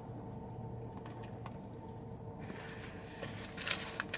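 A man biting into and chewing a crispy fried chicken tender wrap with pickles in a soft tortilla: faint wet chewing with a few small clicks, a little louder near the end.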